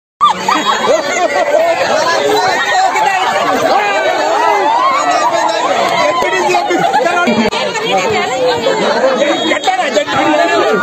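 Crowd of many overlapping voices chattering and calling out at once, with no single voice standing out.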